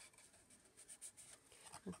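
Near silence, with a few faint rustles and light taps of cardstock being handled and folded.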